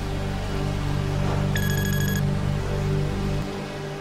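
Intro jingle music: sustained low chords with a bright, bell-like chime about a second and a half in. The low chords drop away about three and a half seconds in, leaving a fainter tail.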